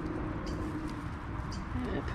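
Hand pressing potting mix into a pocket in a straw bale, with the straw giving a few faint crackles, over a steady low hum that fades out about a second in.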